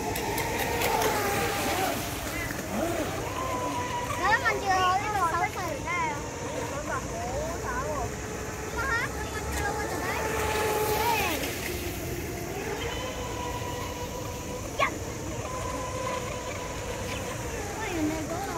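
Radio-controlled model speedboat running fast across a pond, its motor a steady high whine that dips and rises in pitch as it turns, with people's voices over it at times and one sharp click toward the end.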